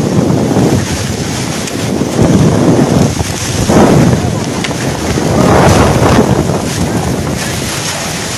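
Cyclone-force wind with driven rain, a loud rushing that swells in gusts a few times and buffets the microphone.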